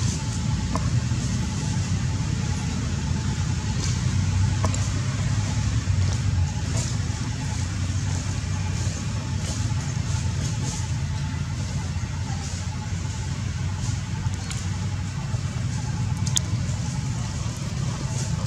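A steady low rumble of background noise, with a few faint clicks.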